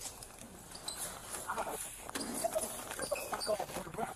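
Body-camera audio of a scuffle: indistinct, muffled voices with a scattered string of knocks and bumps as the camera is jostled.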